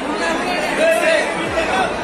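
Chatter of a large crowd: many voices talking over one another at a steady level, with no single voice standing out.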